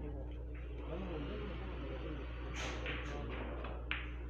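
Carom billiard balls and cue clicking: a run of sharp clicks in the last second and a half, the sharpest and loudest just before the end, over a low steady hum and faint chatter.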